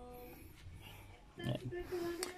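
A man's short, low hum in a quiet room, followed by faint voice sounds near the end.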